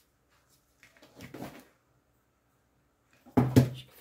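Handling noise from working a grosgrain ribbon bow on a metal duck-bill hair clip: a soft rustle about a second in, then a louder knock and clatter near the end.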